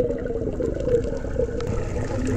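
Muffled underwater rumble and water noise picked up by a camera held underwater, with a faint wavering hum through it.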